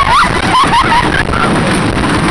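Stampida wooden roller coaster train running along its track with a loud, steady rumble, while riders give several short rising-and-falling screams and whoops in the first second.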